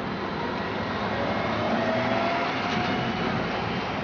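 A dual-mode trolleybus driving past, with a steady running and road noise and a faint whine that rises slightly in pitch in the middle.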